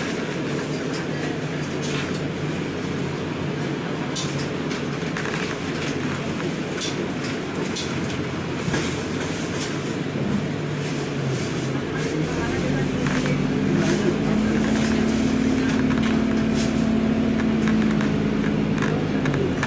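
Inside a bus: engine running and cabin rattling as the bus manoeuvres off its stand, with the engine note growing louder and rising about twelve seconds in as it pulls away and accelerates.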